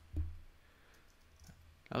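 A single soft click about a quarter second in, from a computer key or button being pressed, then near silence with one faint tick near the end.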